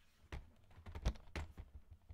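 Handling noise from a portable computer being carried and turned: a few sharp knocks and clicks against its body, the loudest about a second in.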